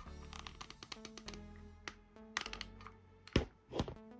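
Soft instrumental background music with held notes. A few sharp clicks and taps sound in the second half, the loudest two near the end, as a hot glue gun is handled and set down on a cutting mat.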